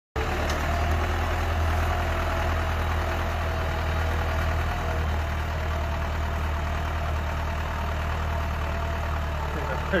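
Farm tractor's engine running steadily under load as it pulls a moldboard plough through the soil.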